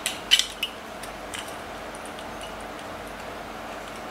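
A few small clicks and scrapes of a circuit board being pushed onto a C.H.I.P. computer's pin headers. The loudest comes about a third of a second in, and after about a second and a half only a faint steady hiss remains.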